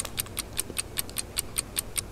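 Fast, even ticking, about eight ticks a second: a ticking-clock sound effect used as a thinking cue.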